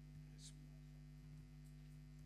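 Near silence with a steady low electrical hum, and a brief faint hiss about half a second in.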